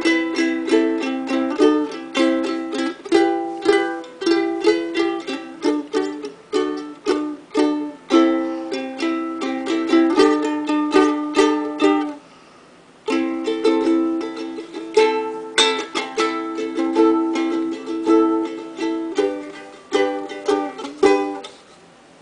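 Kamaka soprano ukulele being strummed, a steady run of chords at several strums a second. The playing stops briefly about halfway through, then resumes and dies away near the end.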